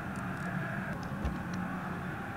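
Steady low background noise with a faint hum and a few soft ticks.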